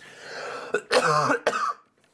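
A man coughing into the crook of his arm: a rasping throat-clearing build-up, then two hard coughs about half a second apart.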